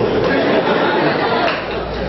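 Many voices in an audience at once, a mixed chatter with no single clear speaker, easing off slightly near the end.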